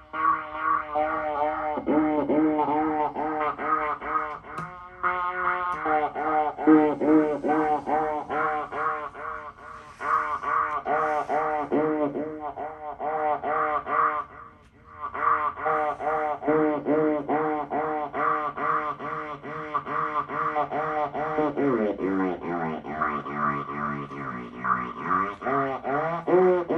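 Electronic music from Moog Moogerfooger analog effects pedals: a pitched, overtone-rich tone pulsing in swooping, wobbling sweeps about three times a second. It breaks off briefly about halfway, and near the end the pitch steps down lower.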